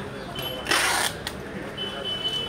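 People's voices in a crowd, with a short burst of noise just under a second in and a thin, steady high tone near the end.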